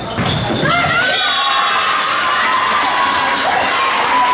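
Volleyball players shouting and cheering as a rally ends, with a ball hit thumping in the first half-second.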